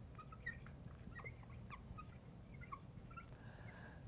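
Faint squeaks of a marker writing on a glass lightboard: a scattered run of short, high chirps as the letters are drawn.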